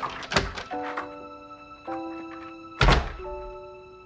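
A door shuts with a heavy thunk about three seconds in, after a few knocks and rustles in the first second, while quiet sustained chords of the score play.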